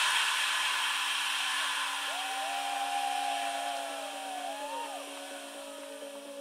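Electronic dance track in a breakdown: the kick and bass drop out, leaving a hiss of noise that slowly fades over held synth tones. About two seconds in, gliding tones bend up and down.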